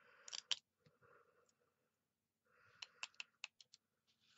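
Faint crackling and sharp clicks of a thin silver peel-off sticker sheet being handled and peeled by fingers: a short burst at the start, then another with about six quick clicks in the last second and a half.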